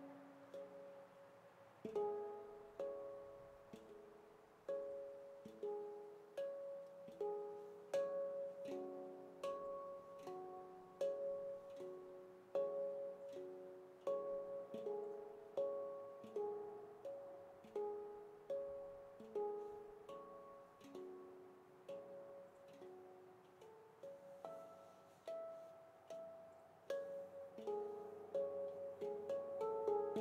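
Veritas Sound Sculptures stainless steel handpan, an 18-note F#3 pygmy, played with the hands: a steady run of struck, ringing notes, about two a second, with sharp clicks on many strokes. The first couple of seconds hold only one fading note before the playing picks up.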